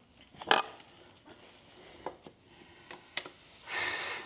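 A sharp knock about half a second in and a few light clicks, then near the end a hot horseshoe held against the trimmed hoof starts to sizzle with a steady hiss as it burns into the horn during hot fitting.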